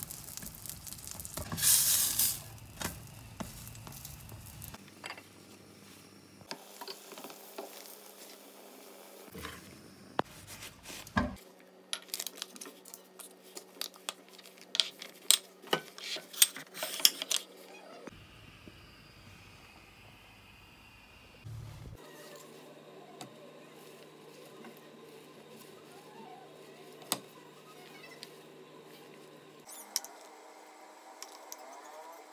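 Kitchen handling sounds across several short cuts: a spatula working a flatbread in a steel frying pan, then a run of sharp clinks and knocks from bowls and plates being moved on a stone counter.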